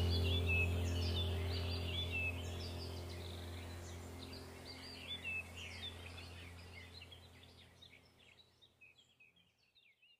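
Ambient relaxation music fading out: a low sustained drone with birdsong chirping over it, both dying away to silence by the end.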